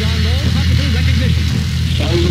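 A voice talking, words unclear, over a steady low droning hum that breaks up about a second and a half in.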